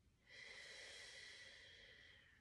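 A woman's single slow, faint breath, steady for nearly two seconds and then fading. It is a deliberate breath taken during a breathing exercise.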